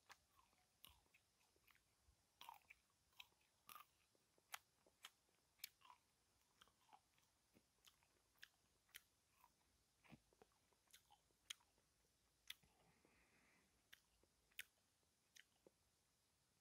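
A person chewing a piece of raw Japanese angelica tree (Aralia elata) root close to the microphone: faint, irregular crunchy clicks about every half second. The root is fibrous and tough and does not snap apart easily.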